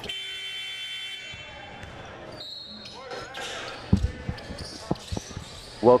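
Basketball dribbled on a hardwood gym floor: a few sharp bounces about four to five seconds in, over faint gym crowd noise. For the first two seconds a steady chord of electronic tones sounds.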